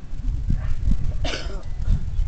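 Wind buffeting the microphone, a loud wavering low rumble, with one brief shout from a person's voice a little over a second in.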